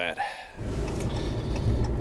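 Pickup truck engine running, heard from inside the cab as a steady low rumble that sets in about half a second in.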